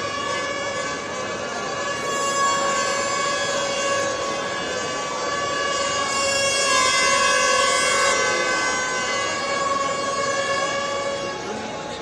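Crowd noise from a large crowd of fans, with a steady, sustained horn-like drone held over it the whole time, swelling a little in the middle.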